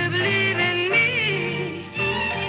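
A 1960s soul record with a woman's lead vocal holding long notes, with a wavering turn about a second in, over the band's backing.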